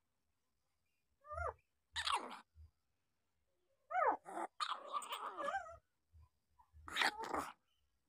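Week-old newborn puppies crying in short, wavering high-pitched calls, in four bouts; the longest, about halfway, is a couple of seconds of overlapping cries.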